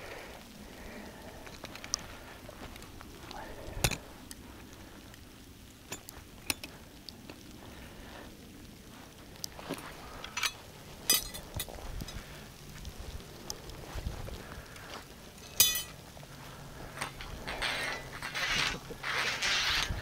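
Scattered metallic clinks and knocks as an MB-750 steel foot trap, its cable and a rebar drowning rod are handled, with rustling through dry grass and leaves near the end.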